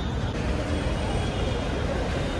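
Steady road traffic noise on a busy city street: a continuous low hum of passing car and bus engines.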